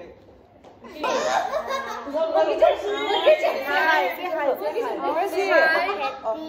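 Several voices, women's and a small child's, talking over one another with some laughter, after a short lull of about a second.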